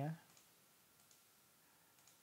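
A few faint computer mouse clicks, spaced about half a second to a second apart, over quiet room tone.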